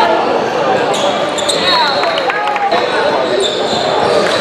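Basketball game sounds in a gym: a ball bouncing on the hardwood court, sneakers squeaking, and players' and spectators' voices echoing in the hall.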